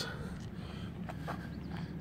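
Faint steady low hum with outdoor background noise. A couple of faint soft ticks come a little past the middle.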